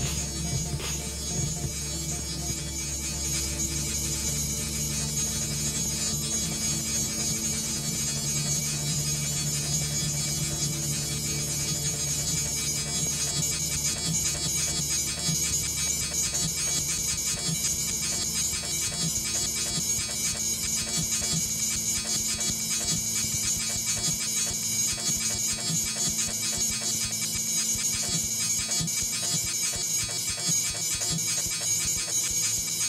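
Improvised modular synthesizer music: layered steady electronic drones with a hiss-like high shimmer on top. The deepest bass drone fades out about two-thirds of the way through.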